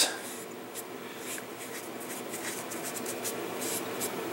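Foam brush dabbing and wiping wood stain onto an MDF plaque: soft, irregular brushing strokes.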